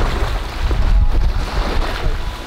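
Small waves washing up over a sandy beach, with strong wind buffeting the microphone as a heavy low rumble.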